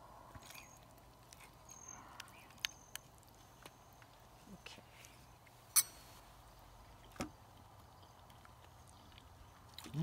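Quiet background with a few light clicks of a spoon against a ceramic bowl while eating. The sharpest clink comes just before six seconds in, and a duller knock a little after seven seconds.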